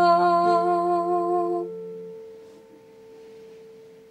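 A woman's voice holds a long final note with vibrato over ringing guitar notes, ending the song. The voice stops about a second and a half in, and the guitar dies away, one note ringing on faintly to the end.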